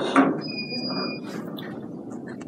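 A short knock, then a steady high-pitched squeal lasting just under a second, with one strong overtone above it.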